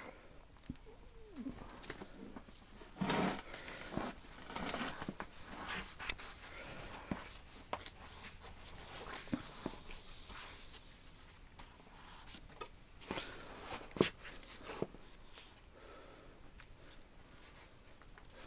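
Paper pages of a thick book being leafed through and handled, with soft rustling and occasional sharp taps and bumps.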